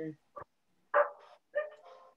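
A dog barking over the video-call audio: a few short barks, the loudest about a second in.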